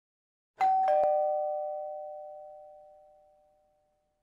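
A doorbell-style two-note chime, ding-dong: a higher note struck, then a lower one about a third of a second later, both ringing on and fading away over about three seconds.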